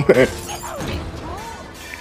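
Cartoon crash sound effect of breaking and splintering, loudest in the first second and then dying away, with music underneath. A short bit of a man's laugh opens it.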